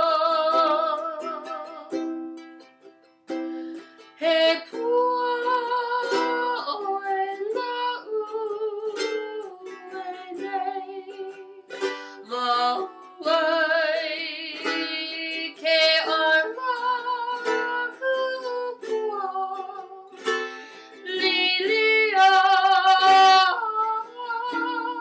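A woman singing a Hawaiian song with a wavering vibrato on long notes, accompanying herself on ukulele.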